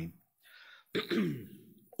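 A man clearing his throat once, about a second in, a short sound falling in pitch.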